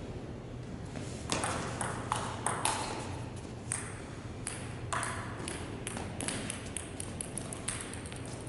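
Table tennis ball clicking off paddles and the table in a short rally for a couple of seconds. Then the loose ball bounces on the floor, its bounces coming closer and closer together as it comes to rest.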